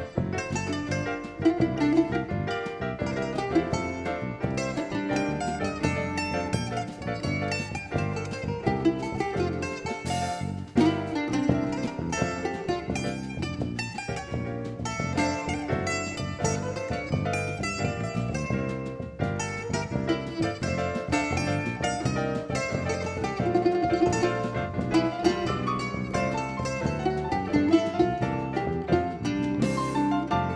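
A small band playing an instrumental piece live on keyboard, drum kit, electric bass and a small plucked string instrument, with a quick, busy melody.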